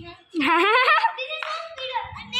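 A child's loud wordless shout, rising in pitch about half a second in, followed by quieter voices.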